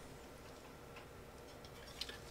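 Near silence: faint room tone between spoken lines.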